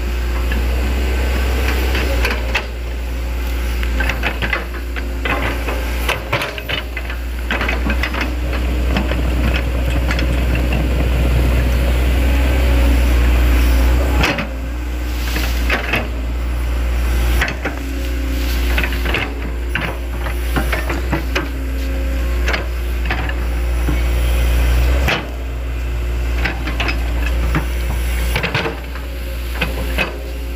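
Hitachi Zaxis hydraulic excavator's diesel engine running under load with a steady low rumble, while the bucket and tracks clank and knock repeatedly as it pushes soil into a ditch. The sound changes abruptly twice.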